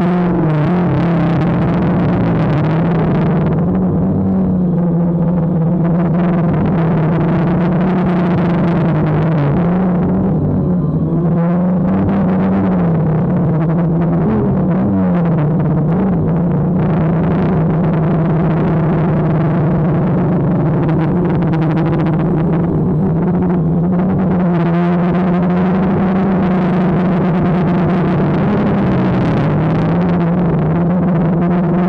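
DJI Phantom quadcopter's motors and propellers humming steadily close to the mic, the pitch wavering up and down a little as the throttle changes.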